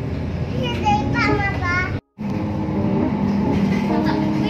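Ride noise inside a moving city bus, a steady rumble of engine and road, with a child's high voice calling out in the first half. Just after halfway the sound drops out briefly and starts again, where one clip is cut to the next.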